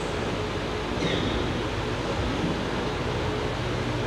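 Steady rushing background noise with a faint low hum, no speech.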